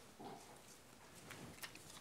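Near silence with faint rustling of paper and Bible pages being turned, and a few light clicks.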